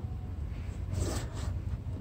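A steady low hum with faint rustling and brushing of handling noise, quieter than the speech around it.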